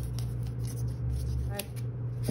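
Glittered washi tape being pulled off its roll, with faint light crackles, over a steady low hum.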